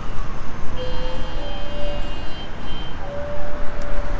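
Road traffic passing close by: a steady, loud rush of car engines and tyres, with faint whines from passing vehicles.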